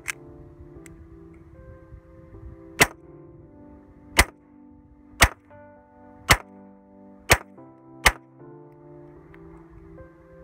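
Rock Island Armory Baby Rock .380 ACP 1911-style pistol fired six times, the shots coming about a second apart, after a small click at the start. Background music plays underneath.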